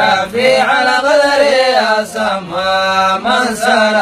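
A solo man's voice chanting through a microphone in long, held, ornamented notes, with short breaks between phrases.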